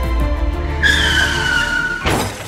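Car tyres screeching in a hard skid, a high, slightly falling squeal that starts about a second in, over background music with a low drone. A crash impact hits right at the end.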